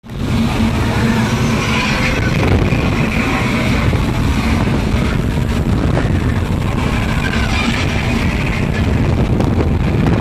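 Hurricane simulator fans blowing air at about 70 mph straight onto the microphone, a loud, steady rush with constant buffeting.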